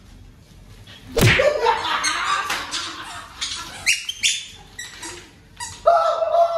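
A leather belt swung in a game lands with one loud, sharp crack about a second in. It is followed by excited shrieks and squeals from onlookers, with laughter starting near the end.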